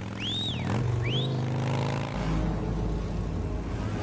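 Motorcycle engines running in a steady low drone, with a deeper rumble joining about two seconds in. Two short high calls rising and falling in pitch sound over it in the first second and a half.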